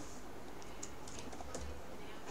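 Faint, irregular clicking of computer keyboard keys: a handful of light keystrokes as a formula is typed.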